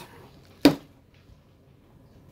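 A single sharp click about two-thirds of a second in, over quiet room tone.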